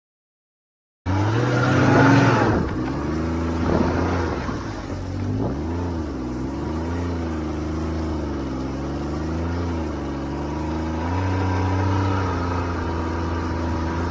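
Snowmobile engine running. It comes in about a second in, swells briefly with a rise in pitch, then runs on with its pitch wavering gently up and down.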